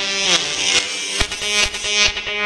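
Buzzy, distorted electronic synth playing in a stripped-down breakdown of a bubbling-style dance remix, with no bass or kick drum. A few short, sharp clicks sound in the second half.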